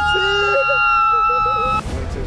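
Excited voices shouting and laughing over a held, steady high chord that cuts off suddenly near the end.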